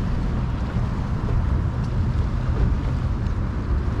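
A boat's engine running steadily as it cruises on the bay, a low rumble mixed with wind buffeting the microphone.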